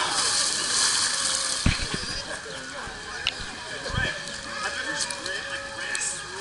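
A person plunging into a swimming pool off the end of a water slide: a loud rushing splash that dies away over about two seconds, with background voices. Two low thumps come about a second and a half in and again near four seconds.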